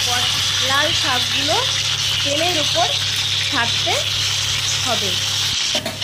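Green chillies and whole spices sizzling in hot oil in an aluminium wok, a steady hiss, with a voice over it. The sound breaks off sharply just before the end.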